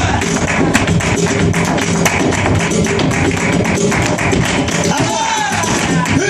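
Live flamenco music: a flamenco dancer's rapid, sharp footwork taps and hand-clapping (palmas) over flamenco guitar.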